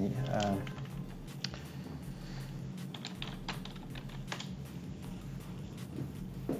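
Computer keyboard typing: a few scattered keystrokes spread over several seconds, after a short spoken word at the start.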